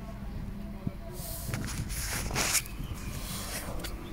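Grafting knife scraping and slicing into the bark of an orange sucker, preparing the slit for a crown graft: a few hissy scrapes, about a second in, a stronger one halfway through, and a short one near the end.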